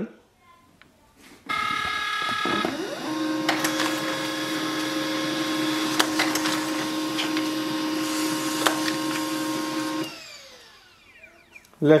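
Pantum M6507NW laser multifunction printer making a copy. A high whine starts about a second and a half in, then the machine runs steadily with a hum and two sharp clicks. About ten seconds in it winds down with a falling whine as the copy is fed out.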